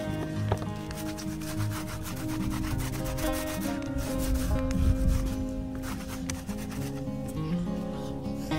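A foam paint roller rubbing back and forth over a stretched canvas, a continuous rasping scrape, with background music's held notes running underneath.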